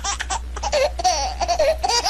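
High-pitched laughter in quick repeated ha-ha bursts, several a second, wavering in pitch.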